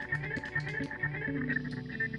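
A looped guitar phrase plays back from a Chase Bliss Blooper looper pedal. A footswitch press resets the loop to a chosen point, so the short notes keep cutting off and starting again.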